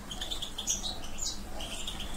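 Small birds chirping in the background: a string of short, high chirps repeated several times, over a faint steady hum.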